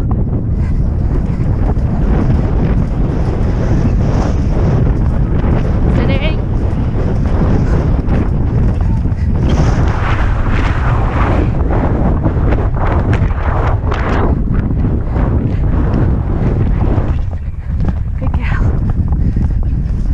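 Wind buffeting a helmet-mounted action camera's microphone at a gallop, with irregular thuds from the horse's hoofbeats and tack underneath; it eases briefly a few seconds before the end.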